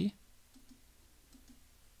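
A few faint computer mouse clicks as the spin-button arrow of a numeric field is clicked, stepping its value down.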